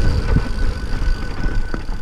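Yeti SB6 full-suspension mountain bike rolling down a dirt trail: a loud, dense low rumble of wind and tyre noise on the camera microphone, broken by short clicks and rattles from the bike. A thin steady high tone runs underneath.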